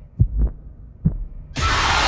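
Deep, slow heartbeat thumps of a horror-trailer sound design, then about one and a half seconds in a sudden loud burst of harsh noise cuts in.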